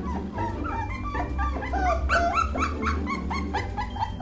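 Akita Inu puppies, about five weeks old, whining and yipping in a quick run of short high cries that fall in pitch, loudest about two seconds in, over light background music.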